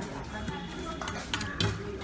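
Utensils clinking against stainless steel bowls and plates, with a few sharp clicks in the second half.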